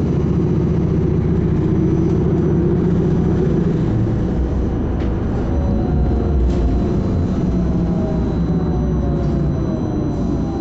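MBTA Silver Line bus running along a street, heard from inside the passenger cabin: steady engine and road noise, with a whine that falls in pitch in the second half.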